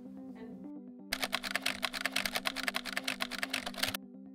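Soft background music with a quick run of keyboard typing clicks, a sound effect for on-screen text, starting about a second in and stopping just before the end.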